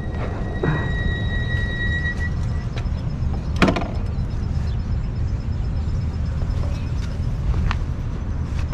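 Super73 electric bike rolling slowly, with a steady low rumble of wind and road noise on the microphone. A thin steady whine fades out about two seconds in, and a single sharp knock comes about halfway through.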